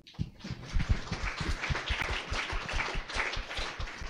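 Audience applauding: many hands clapping together, building up over the first second and then going on evenly.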